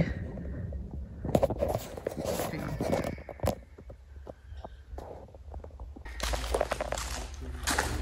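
Footsteps on wet gravel inside a brick railway tunnel, irregular steps loudest in the first few seconds, with one sharper click about three and a half seconds in.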